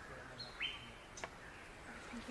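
A faint bird call: a single whistled note that rises quickly and then holds steady for about half a second, followed by a brief click.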